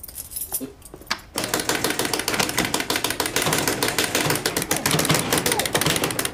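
Rapid, continuous clicking and rattling of an arcade-style joystick and buttons being mashed during a video game, starting a little over a second in.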